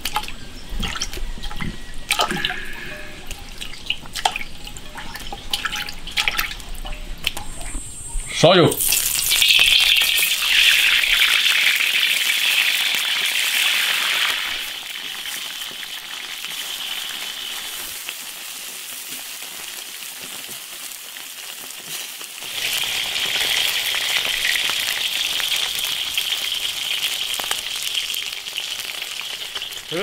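Water dripping and splashing as soaked pieces of dried grass carp are handled and rinsed in a bamboo basket, with scattered small knocks. After a sharp knock about a third of the way in comes a steady rushing hiss of running water, which fades in the middle and comes back strongly for the last several seconds.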